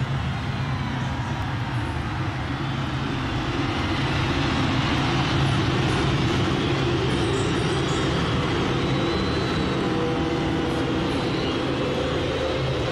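A huge stadium crowd cheering and screaming in one continuous roar, with a steady low hum underneath.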